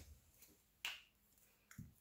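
A single sharp click about a second in as a glue stick's cap is pulled off, then a soft knock near the end; otherwise near silence.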